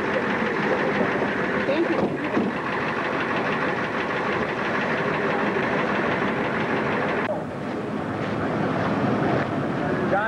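A vehicle engine running close by as a steady rumble with faint voices under it. The sound changes abruptly about two seconds in and again about seven seconds in.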